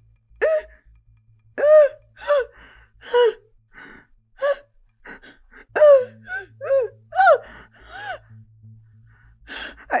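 A woman sobbing and crying out in pain: about a dozen short, gasping wails separated by brief pauses, each rising and then falling in pitch.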